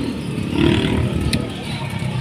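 Street background noise: a steady low rumble, with a brief voice about half a second in and a couple of light clicks near the end.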